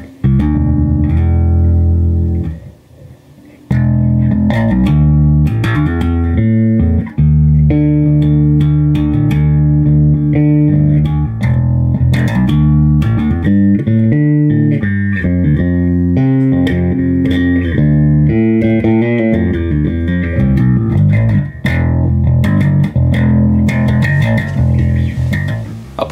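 Electric bass played through a Behringer BA115 cabinet's 15-inch aluminium-cone speaker, heard through the camera's microphone, showing the cab working again now that its broken speaker lead has been re-soldered. One note rings out first, there is a short break, and then a run of bass notes is played without pause.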